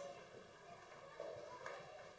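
Faint sanctuary room noise: soft shuffling and movement with a light click or two.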